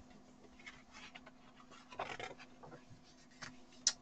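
Pages of a large, old paper book being turned and handled: faint paper rustling, a little louder about two seconds in, with a short crisp tick near the end.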